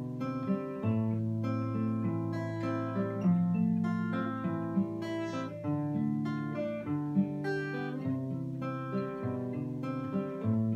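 Solo acoustic guitar playing an instrumental passage of a Scottish folk tune, with a melody moving over held low bass notes.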